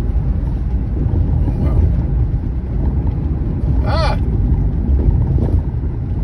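Steady low road and engine rumble inside a moving car's cabin, with a brief high-pitched squeak about four seconds in.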